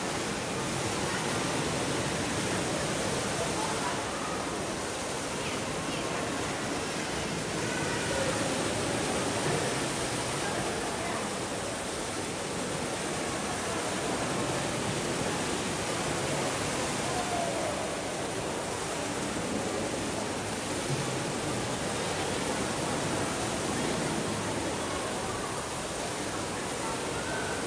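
The Rain Oculus indoor waterfall: water from the acrylic skylight bowl falling two storeys and splashing into the pool below, a steady rushing sound.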